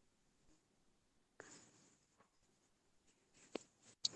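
Near silence on a video-call line: faint hiss with two soft clicks, one about a third of the way in and one near the end.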